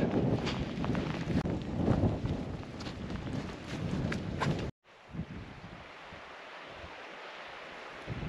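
Wind buffeting the microphone, with rustling and small knocks, that cuts off suddenly a little past halfway and gives way to a fainter, steady wind hiss.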